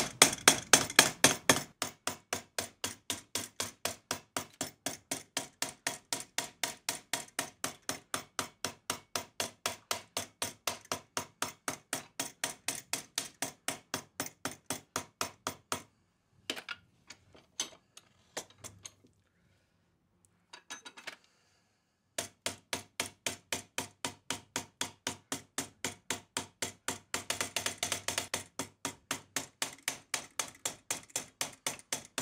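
Soft nylon-faced hammer striking annealed copper plate clamped over a former, in a steady run of about four blows a second as the copper is worked into an inner flange for a locomotive boiler backhead. Midway the blows stop for about six seconds, with only a few scattered knocks, then resume.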